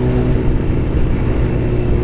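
Honda CBR600's inline-four engine running at a steady cruise, holding one even engine note, with wind rumbling on the helmet-mounted microphone.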